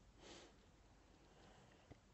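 Near silence, with one brief faint sniff from a man about a quarter second in.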